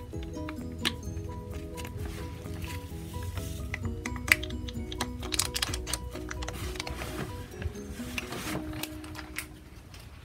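Light background music: a simple melody of steady, stepping notes. Over it, scattered crinkles and taps from a foil food packet being shaken out over a plastic bowl, thickest around the middle, with one sharper tap about four seconds in.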